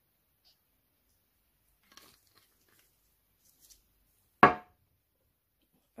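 A glass bottle set down on a table: one sharp clink with a short ring about four and a half seconds in, after a few faint handling ticks.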